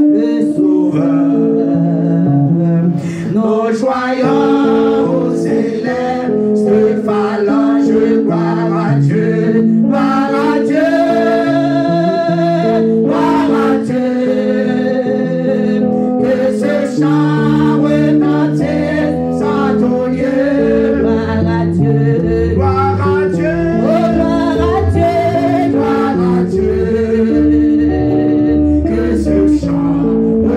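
A woman singing a church song into a microphone over instrumental accompaniment of held chords. Deep bass notes join about halfway through.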